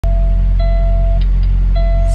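Semi-truck diesel engine idling with a steady low rumble, heard from inside the cab. A thin held tone comes on and off twice over it.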